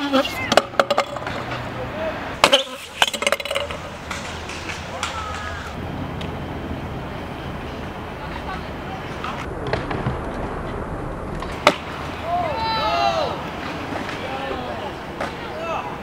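Stunt scooter wheels rolling on a concrete skatepark bowl, with a cluster of sharp clacks from deck and wheel impacts in the first few seconds and one more sharp clack past the middle. Voices call out near the end.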